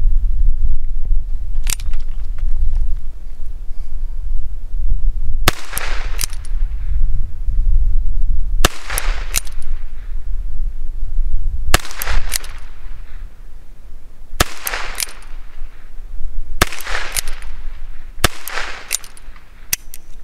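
Ruger Wrangler .22 LR single-action revolver fired six times, slowly at first and then quicker, with the shots two to three seconds apart. Each shot is followed by a fainter sharp crack about half a second later.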